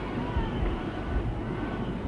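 Steady crowd noise of a large stadium crowd, heard as a continuous even murmur with some low rumble under the TV broadcast.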